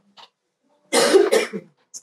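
A person coughing, a short double cough about a second in.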